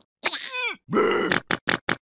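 Cartoon character's wordless vocal effects: a short groan that falls in pitch, then a strained grunt, followed by four quick clicks near the end.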